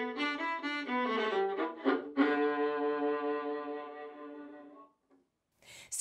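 Five-string violin bowed on its lower strings to mimic lower-pitched birds: a run of short notes, then one long low note about two seconds in that fades away.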